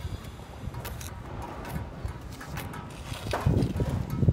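Steel hand trowel working wet cement mortar: scattered soft scrapes and knocks, with a louder scrape near the end.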